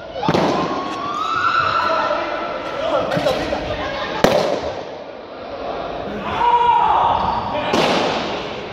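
Balloons being squeezed between players' bodies until they burst, giving several sharp bangs, the loudest about four seconds in, ringing in a large sports hall. Students shout and call out around them.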